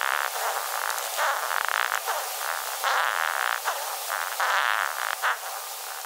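Courtship song of a male Japanese rhinoceros beetle: a thin, squeaky rasping that swells and fades in uneven spells, with no low end.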